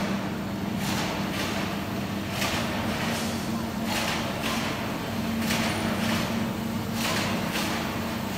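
Steady industrial hum of a mesh-production workshop hall, a low drone over a noisy bed, with short hissy noises recurring about every second.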